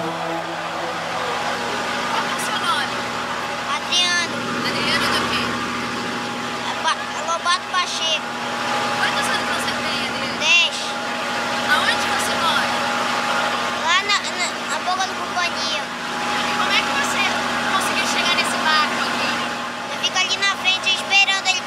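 Steady drone of a passenger riverboat's engine, with people's voices calling out over it now and then.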